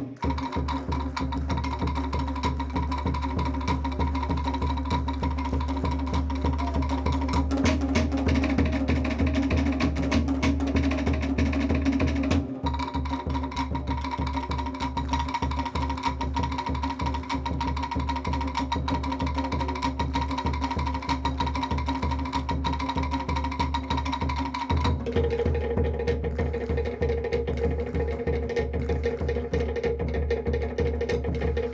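Fast Tahitian drumming music: rapid strokes on wooden slit drums (to'ere) with drums beneath, accompanying a Tahitian dance. The rhythm changes pattern about twelve seconds in and again about twenty-five seconds in.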